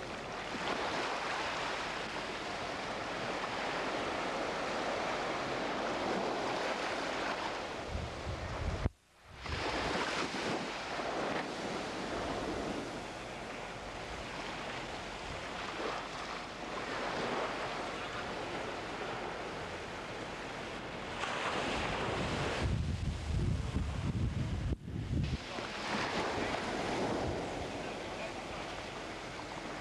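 Surf washing on a beach, with wind buffeting the camcorder microphone at times. The sound drops out briefly about nine seconds in and again near the end.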